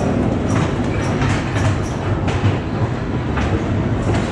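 Ghost-train car rolling along its track: a steady low rumble of the wheels, with irregular clicks and knocks.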